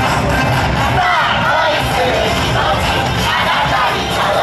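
Loud yosakoi dance music over a sound system, with many voices shouting together over it.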